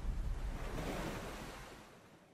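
Noisy whoosh of an intro logo sound effect, a surf-like wash that fades steadily away to near silence near the end.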